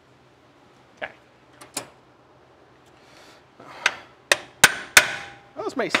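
Hammer strikes on the metal brake parts: two light taps about a second in, then four sharp, ringing blows in quick succession near the end.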